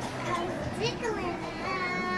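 Overlapping chatter of many children's voices, with no single speaker clear. Near the end one voice holds a long steady note.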